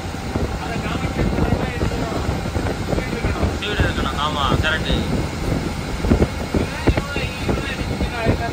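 Cabin noise inside an AC sleeper bus running at highway speed: a steady low drone of engine and tyres on the road, with occasional knocks and rattles from the body. Voices come through briefly about halfway through and near the end.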